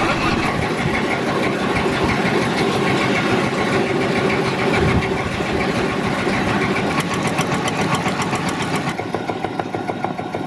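A small river boat's motor running steadily, heard from on board the moving boat, with a fast, even beat.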